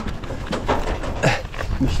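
A cyclist breathing hard on a technical gravel section: a run of short, sharp breaths about every half second over a low rumble.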